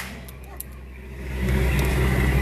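A single loud shot from the skipper's blank-firing pistol right at the start, fired to scare the hippos. It is followed by the steady low hum of the tour boat's motor, which grows louder after about a second and a half.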